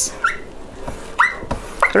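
Whiteboard marker squeaking against the board as lines are drawn: a short rising squeak just after the start, then a longer, steady squeak about a second in.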